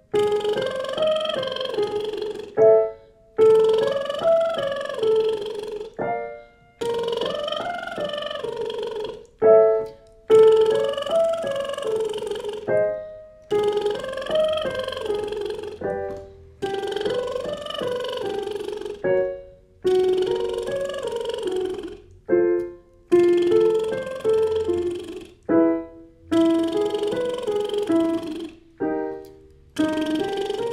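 A woman's voice doing lip trills as a vocal warm-up: buzzing lips sliding up and back down a short scale. Each slide is cued by a few piano notes, and the pattern repeats about every three seconds. The last few repeats step lower in pitch.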